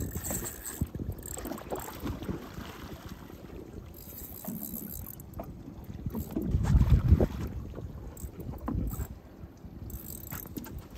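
Wind buffeting the microphone over water lapping at a small skiff's hull, a low unpitched rumble with a stronger gust about two-thirds of the way through.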